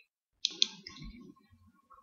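Two quick computer mouse clicks, a fifth of a second apart, followed by faint low noise.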